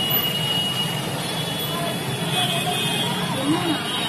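Street traffic noise: city buses running past on the road, with indistinct voices of people in the street.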